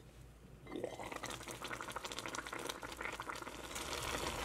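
Rice, water and Korean thistle boiling in a cast iron pot (gamasot), a faint, dense crackling bubble that starts about a second in as the lid comes off.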